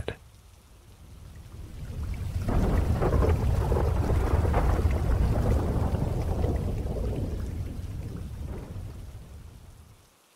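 Rolling thunder over rain: a low rumble that swells up over the first few seconds, then slowly dies away toward the end.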